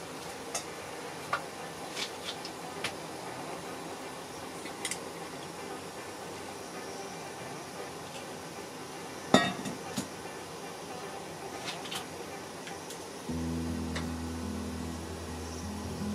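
Water bubbling in an aluminium saucepan full of edamame pods as it comes back to the boil after the pods were added. Scattered light clicks of chopsticks against the pot, with one sharper knock about nine seconds in. A low steady tone comes in near the end.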